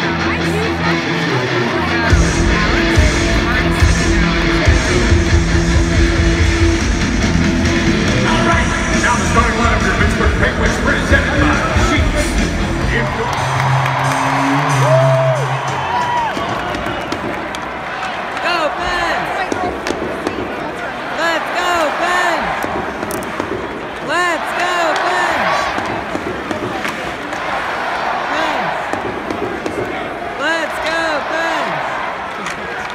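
Hockey arena PA music with a heavy, pounding bass beat over the crowd, cutting out about 13 seconds in. A few held notes follow, then the steady hubbub of the arena crowd with many voices as play starts.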